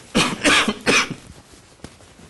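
A person coughing three times in quick succession.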